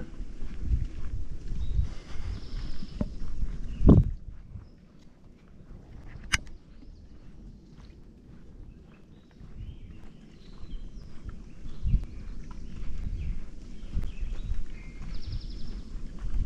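Footsteps on a sandy dirt trail, with a quieter stretch in the middle and one loud thump about four seconds in. Faint birdsong sounds in the woods behind.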